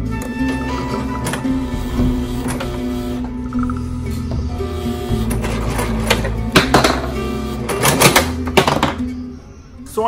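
Background music with a steady beat, and under it a domestic sewing machine stitching cotton fabric: a rapid mechanical clatter that comes in short runs in the second half.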